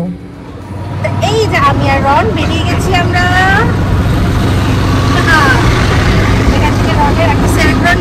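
Auto-rickshaw running under way, heard from the passenger seat: a steady low engine hum with road rumble that sets in about a second in. A woman's voice speaks over it in the first half and again briefly later.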